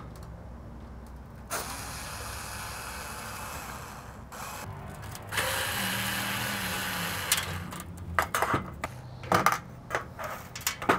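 Cordless screwdriver running in two spells of about two to three seconds each, backing out the screws that hold a gas valve to a burner assembly; the second spell is louder. Near the end, a few short clicks and light metal knocks as the loosened parts are handled.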